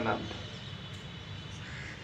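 The tail end of a man's speech, then a pause of steady low background noise with a faint hum.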